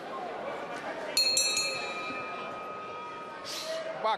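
Boxing ring bell struck two or three times in quick succession about a second in, its metallic ring dying away over the next two seconds: the bell signalling the start of a round. Crowd chatter runs underneath.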